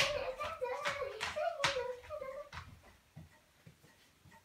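A young girl's high voice vocalizing without clear words, wavering in pitch, mixed with several sharp taps, over the first two and a half seconds.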